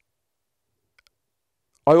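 Near silence in a pause of speech, broken by two faint clicks about a second in; a man starts speaking near the end.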